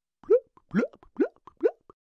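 Cartoon 'bloop' bubble sound effect: four quick bloops, each rising in pitch.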